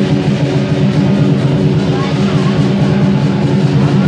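Vietnamese lion dance percussion ensemble playing live: a large lion dance drum with hand cymbals, beating a dense, continuous rhythm.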